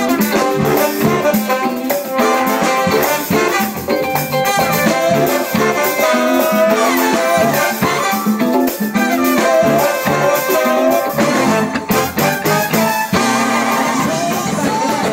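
Live funk band playing loud: a horn section of trumpets, trombone and saxophones playing together over electric guitar and drums.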